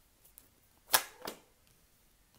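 A tarot card dealt off the deck and laid down on the table: one sharp snap about a second in, followed by a softer tap.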